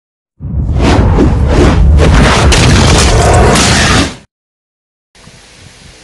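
Loud intro sound effect mixed with music, lasting about four seconds with several sharp hits, then cutting off abruptly into silence.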